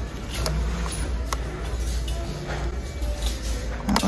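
Background music playing quietly over a steady low rumble, with a few light clicks from an object being handled.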